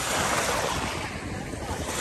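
Small sea waves washing over a shallow pebbly shore, with wind rumbling on the microphone.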